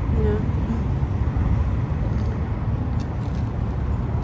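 Steady low rumble of road traffic, with no single event standing out.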